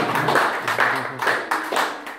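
Audience applauding, the clapping gradually dying down.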